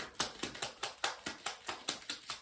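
A deck of tarot cards being shuffled by hand: a quick, even run of crisp card clicks, about six a second.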